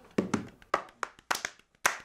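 A quick, uneven run of about ten light taps and clicks, sharp and short, with no steady sound between them.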